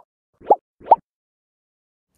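Two short, quickly rising 'bloop' sound effects about half a second apart, accompanying an animated logo transition.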